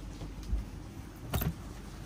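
Cotton T-shirts rustling and shuffling as they are handled and unfolded on a counter, with a brief louder rustle about a second and a half in, over a low steady background hum.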